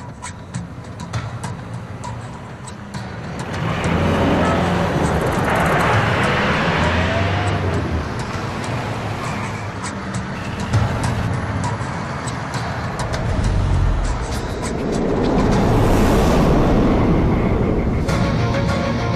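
Background music with a ticking beat over the rushing noise of road traffic. A light truck's approach swells up about four seconds in and again near the end.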